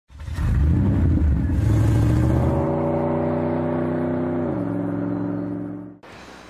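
A car engine revving up, then holding a steady pitch that drops once about four and a half seconds in, fading out at the end.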